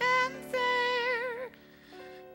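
A high, warbling old-lady singing voice, sung for a ventriloquist's puppet. A short note, then a long held note with wide vibrato that ends about one and a half seconds in, followed by a short pause in the song.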